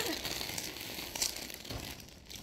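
Plastic chip bag crinkling as it is handled: a scatter of short crackles that grows fainter.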